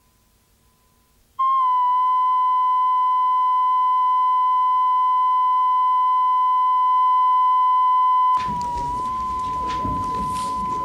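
Videotape line-up test tone, the steady 1 kHz reference tone that goes with colour bars. It comes in abruptly after about a second and a half of near silence and holds one unwavering pitch. Near the end it drops in level, and room noise and tape hiss come in beneath it.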